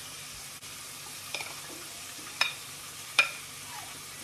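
Oil sizzling steadily in a frying pan as saltfish fritter batter is spooned in. Over it come three sharp, ringing clinks of a metal spoon against a ceramic mixing bowl, about a second apart, the last the loudest.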